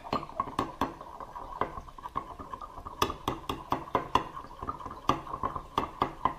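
Metal spatula stirring liquid soft-bait plastic in a glass measuring cup: continuous scraping against the glass, broken by sharp, irregular clinks several times a second, as white colorant is mixed in.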